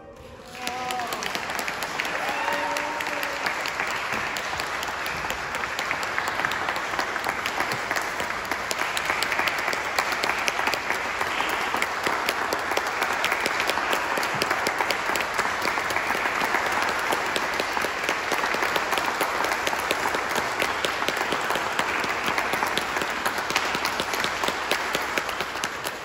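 Audience applause breaks out about a second in and goes on steadily, with a few voices calling out near the start.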